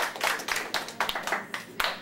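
A small class clapping their hands in applause, the claps thinning out and quietening near the end.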